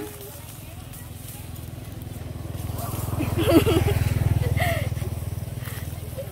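A small engine going by nearby: a low, steady drone that builds over the first few seconds, is loudest about four seconds in, then eases off. Brief talk over it.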